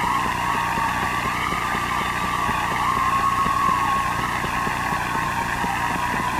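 Arena audience applauding, a dense steady patter of claps, with a steady held tone sounding over it.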